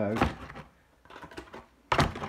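A cardboard shoe box of vacuum-sealed bags being handled: a few faint handling sounds, then one sharp knock near the end.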